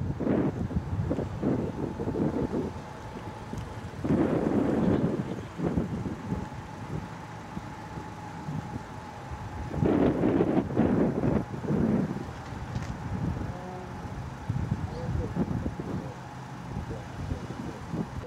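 Indistinct voices outdoors in loud, irregular bursts, with a thin steady hum under them that stops about twelve seconds in.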